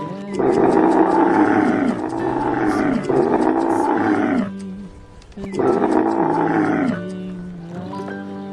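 Camel bellowing: a long call in three parts lasting about four seconds, then a shorter call after a brief pause, over steady background music.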